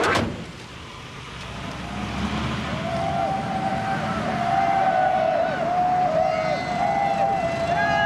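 A sudden thump at the start, then from about three seconds in a siren wailing, its pitch rising and falling in short sweeps.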